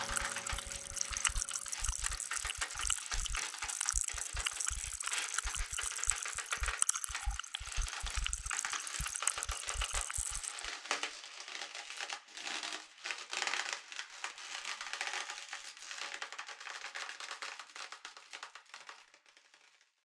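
Experimental electronic music built from field recordings and synthesizers: a dense, crackling, rattling texture with irregular low thuds. The thuds stop about halfway, and the thinner crackle then fades out at the end.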